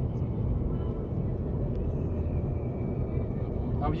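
Steady road and wind noise heard inside the cabin of an Opel Astra Sports Tourer cruising at motorway speed, a low even rumble of tyres and drivetrain.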